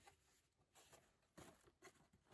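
Near silence, with three faint, short rustles of a cardboard box being opened by hand.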